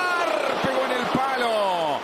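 A football TV commentator's single long, drawn-out exclamation, gliding slowly down in pitch as the free kick flies at goal, over faint stadium crowd noise. Two short low thuds come about two-thirds of a second and a second in.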